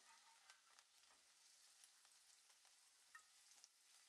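Near silence: only a very faint sizzle of okra frying in oil, with scattered faint crackles.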